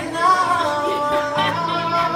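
A man singing long held notes into a microphone over acoustic guitar chords.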